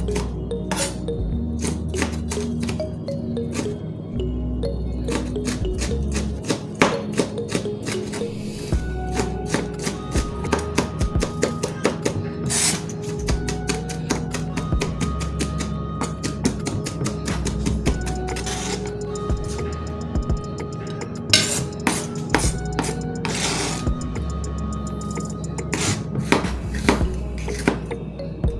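Kitchen knife chopping red peppers on a plastic cutting board: many quick, sharp taps of the blade on the board, heard over background music.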